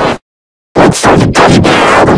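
Very loud, harsh, distorted noise that cuts off dead about a fifth of a second in, leaving half a second of total silence, then starts again just as loud. It has the texture of heavily clipped, effect-processed audio and sounds like gunfire or a blast.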